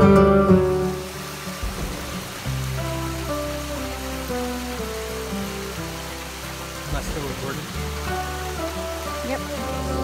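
Quiet background music with held tones over the steady rush of a small stream cascading over rocks, after louder music fades down about a second in.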